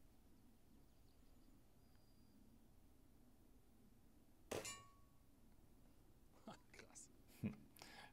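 A single shot from a Diana 54 Airking Pro spring-piston air rifle about four and a half seconds in: a sharp crack with a brief metallic ringing. A few softer metallic clicks follow near the end as the rifle is handled.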